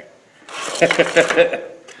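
A person laughing: a short run of breathy laughs about half a second in, lasting roughly a second.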